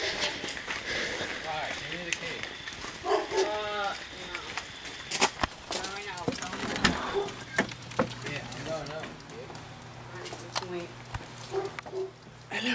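People's voices, indistinct talk and laughter, with a few sharp clicks a little past the middle and a steady low hum from about seven seconds in.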